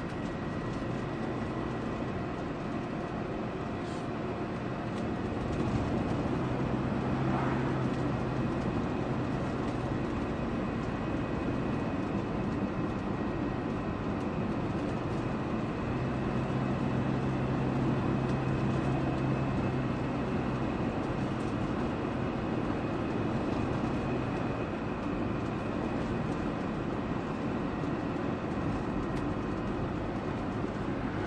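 Steady car road and engine noise heard inside the cabin, with a low hum, while cruising at about 30 mph.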